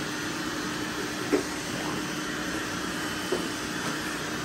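Several robot vacuums running together on a mattress: a steady whir of their motors and brushes with a low hum. Two short knocks come through, about a second in and near the end.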